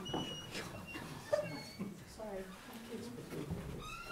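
Quiet, indistinct talking in a meeting room, with a few short high squeaks and a single light knock.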